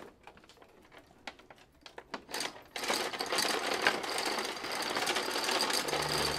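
A few light clicks, then from about three seconds in a steady, fast mechanical rattling.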